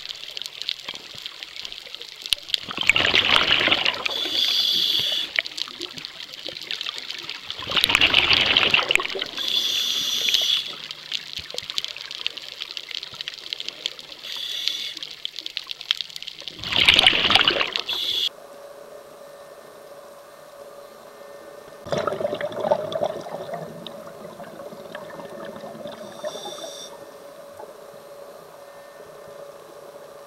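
Scuba diver's regulator breathing underwater: several loud rushes of exhaled bubbles, several seconds apart. Each is followed by a shorter, thinner hiss of breathing in through the regulator.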